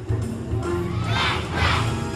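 Backing music with a steady bass line, over which a large group of young children shout together twice in quick succession past the middle.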